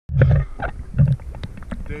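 A diver's muffled, low voice in a few short bursts at the water's surface, with small clicks of water at the microphone.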